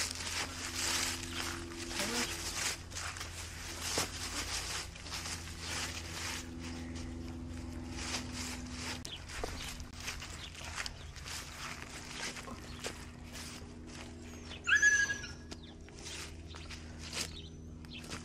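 Scattered footsteps and rustling in dry leaves as a haltered cow is led and shuffles about. A short high chirp sounds about three-quarters of the way through.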